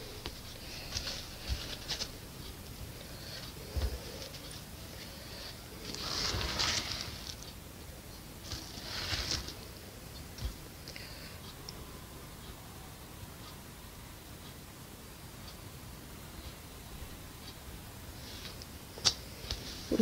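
Palette knife skimming wet acrylic paint over a canvas: faint soft scraping strokes, with two longer swishes about six and nine seconds in and a few small clicks.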